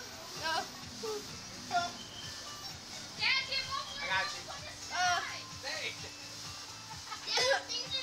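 Children shouting and squealing, with other voices around and background music. A steady low hum sets in about three seconds in.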